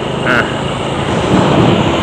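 Steady riding noise of a Honda scooter under way: wind on the microphone and road noise, with a short spoken exclamation near the start.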